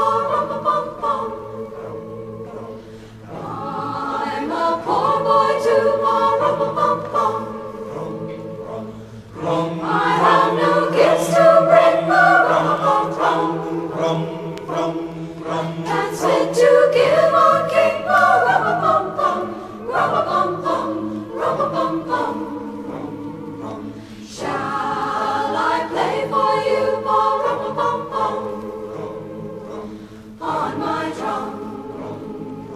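A high school choir singing slow, sustained chords with no clear words, in phrases that swell and fall back. The fullest passage comes about a third of the way in.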